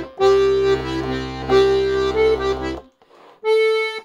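Castagnari Handry 18 G/C melodeon (diatonic button accordion) playing a short passage of chords with bass notes, using its pull A, which stops shortly before three seconds in. After a brief pause comes a single held note, the push A.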